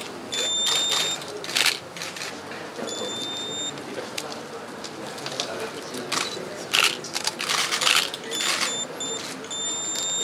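Camera autofocus beeps and shutter clicks from several cameras photographing a handshake and certificate presentation, over murmured conversation. The short high beeps come in pairs and clusters, mostly near the start and towards the end, with the shutter clicks scattered between them.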